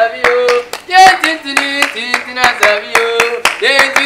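Hand clapping in a quick, steady beat, with voices singing a chant over it.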